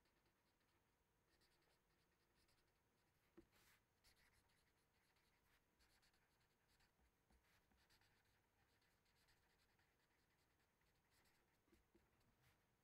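Near silence with the faint scratching of a felt-tip marker writing on paper, and one small tick about three seconds in.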